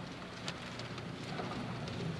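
Quiet church room ambience during a pause in the service: a faint, even hiss with small scattered rustles and clicks from the seated congregation, and one sharper click about half a second in.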